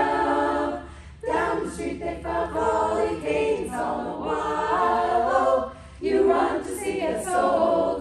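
Women's choir singing a cappella in harmony, in phrases broken by short breaths about a second in and again about six seconds in.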